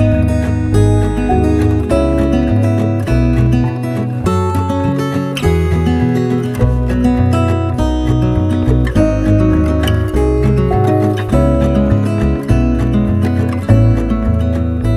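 Background music: a strummed acoustic guitar track with a steady bass line.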